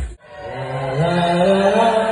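Loud dance-pop music cuts off abruptly at the start, and a live sung vocal takes over, holding one long note that slides slowly upward in pitch.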